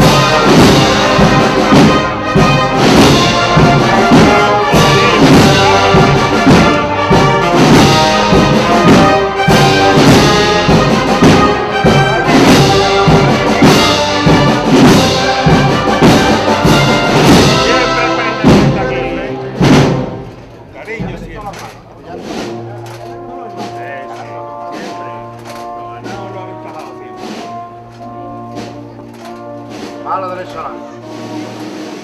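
Procession band with brass and drums playing a Holy Week processional march. The music ends about two-thirds of the way through on a final sharp stroke, leaving a quieter murmur of voices.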